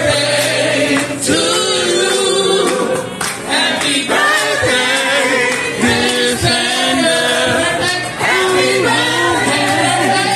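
A group of people singing a birthday song together over backing music, holding long sung notes above a steady bass note.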